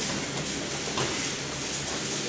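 Wrestlers shifting and scuffling on a foam wrestling mat over steady room noise, with a faint knock about a second in.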